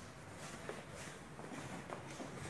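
Faint knocks, clicks and rustling from handling, as the hand-held phone camera is moved about and a hand touches the parts being shown, over a steady low hum.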